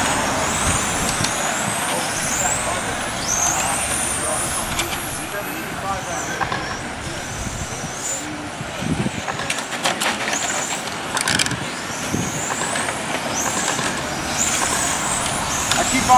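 Electric 1/10-scale RC touring cars with 17.5-turn brushless motors racing: high-pitched motor whines rise again and again as the cars accelerate out of corners and down the straights, over a steady background noise. A few sharp clicks come about nine to eleven seconds in.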